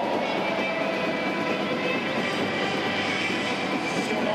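Steady stadium crowd noise from the spectators in the stands: an even wash of sound with no sudden cheer.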